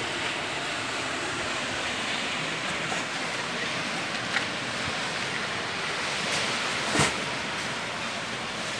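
Steady wash of sea waves breaking on a sandy beach, with one short sharp noise about seven seconds in.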